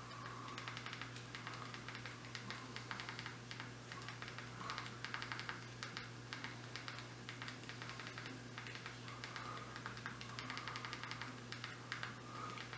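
Quick runs of small plastic clicks as the navigation buttons of an Amazon Fire TV remote are pressed repeatedly to step a cursor across an on-screen keyboard. A low, steady hum runs underneath.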